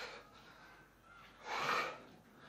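A man breathing hard from exertion: two loud breaths, one at the start and a louder one about a second and a half in.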